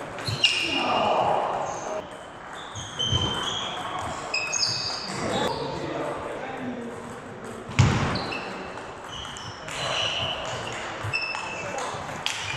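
Table tennis ball clicking back and forth off bats and table during a rally, echoing in a large hall, with a couple of heavy thuds about three and eight seconds in.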